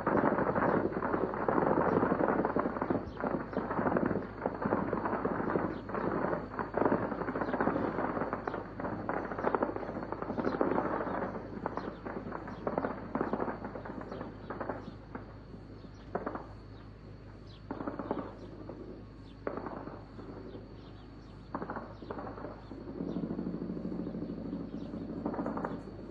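Gunfire: dense, rapid strings of automatic-weapon shots for roughly the first half, thinning to scattered single shots and short bursts. A steady low hum joins near the end.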